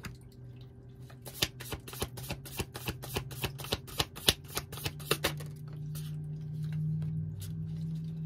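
Hand shuffling of a Muse Tarot deck: a quick run of crisp card clicks and flicks for the first five seconds or so, then only a few. A low steady hum runs underneath and grows a little louder in the second half.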